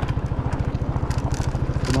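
Motorcycle engine running at low speed with a rapid, even low putter as the bike rolls slowly.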